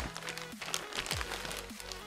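Plastic anti-static bag crinkling as a motherboard is handled and slid out of it, with quiet background music throughout.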